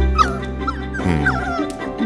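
A puppy giving several short, high yips and whimpers over background music.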